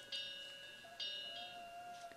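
Faint high metallic chime tones ringing, struck twice about a second apart, each ring fading slowly.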